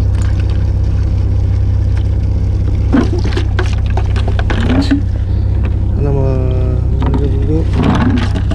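A plastic bucket is dipped over the side of a boat and hauled back up full of seawater, with splashing and pouring water about three seconds in and again near five seconds. Under it the boat's engine hums steadily and low.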